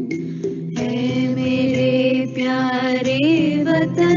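Two girls singing a slow song together, holding long notes that waver in pitch.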